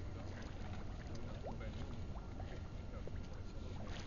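Faint bubbling and small plops at the surface of icy harbour water, where a scuba diver's exhaled air bubbles come up, over a steady low rumble.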